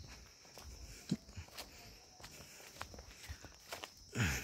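Footsteps of someone walking along a path through tall grass and shrubs, heard as scattered soft thumps and rustles, the loudest a thump about a second in. A steady high hiss runs underneath.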